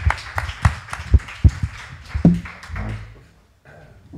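Irregular knocks and clatter of chairs and people moving as an audience gets up to leave a hall, with a short voice-like sound about two seconds in; it dies away near the end.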